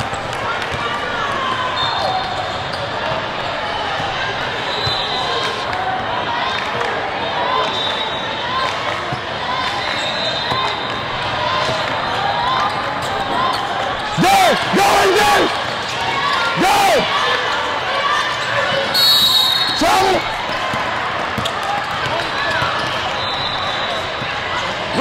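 A basketball bouncing on a hardwood court over a steady din of voices echoing in a large hall, with a few short, sharp louder sounds about two-thirds of the way through.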